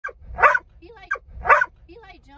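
A large dog barking, one loud bark heard twice about a second apart, each just after a shorter sound.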